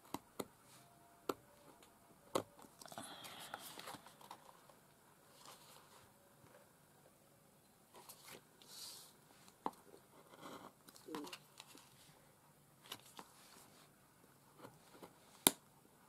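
Cardstock being handled and slid across a plastic cutting mat: soft paper rustling in short stretches, with scattered sharp taps against the mat, the sharpest near the end.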